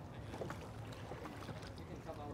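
A small rowboat being rowed: faint water sounds from the oars and hull, with a few soft knocks.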